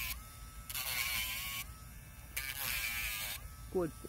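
Battery-operated Dremel rotary tool with a sandpaper head running steadily and grinding a dog's toenail in three passes of about a second each, its pitch dipping slightly as the sanding head meets the nail.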